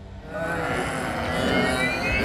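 A soundtrack swell builds from about half a second in, with high tones gliding slowly upward, leading into an action scene. A short sigh is heard near the middle.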